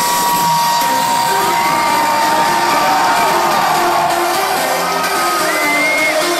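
Loud electronic dance music from a festival sound system, recorded from within the crowd, with a long high held note through the first few seconds over repeating synth notes. The crowd cheers and whoops over the music.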